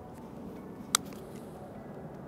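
A single crisp click about a second in: the face of a TaylorMade P790 UDI driving iron striking a golf ball on a short chip shot.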